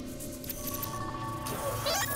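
Orchestral-style background score with steady sustained tones. About a second and a half in, a warbling electronic sound effect sweeps down and back up.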